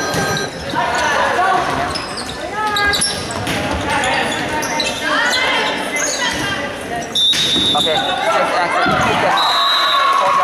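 Indoor volleyball rally in a gym: players shouting calls over the thuds of the ball being hit, all echoing in the large hall.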